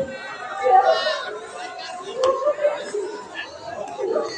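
Speech: voices talking in Bengali, with background chatter and one sharp click a little over two seconds in.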